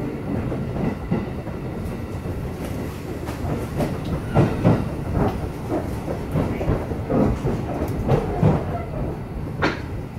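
A train heard from inside the passenger car: a steady low rumble with irregular clicks and knocks as the wheels cross rail joints, with one sharper click near the end.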